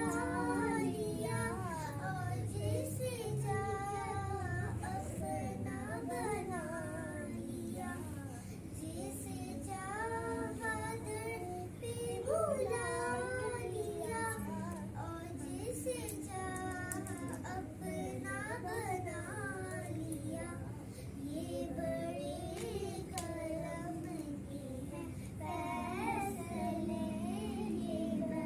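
Background song sung in a high, child-like voice, the melody continuing throughout.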